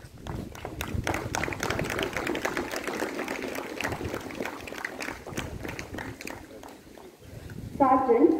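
Audience applauding: a patter of many claps that swells about a second in and thins out toward the end, with voices murmuring underneath.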